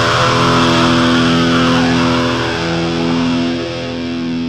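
Distorted electric guitar, with bass underneath, holding one sustained chord and letting it ring out in a Japanese hardcore punk recording. There are no drums or vocals, and it fades slightly toward the end.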